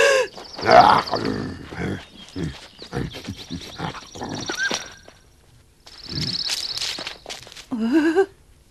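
Cartoon tiger sound effects: snarls and grunts over scuffling clicks, with a high rattling trill twice and a brief hush in the middle.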